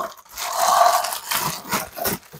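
Clear plastic wrapping film crinkling and rustling as it is handled and peeled off a toy case.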